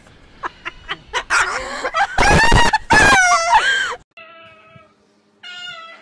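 A white cockatoo screeching: a few short calls, then two long, loud screeches about two seconds in, the second sliding down and then back up in pitch. After a cut, two quieter, steady meow-like calls.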